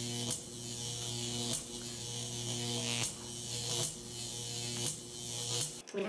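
A steady low electric buzz with a hiss over it, dropping out briefly and resuming about every second or so.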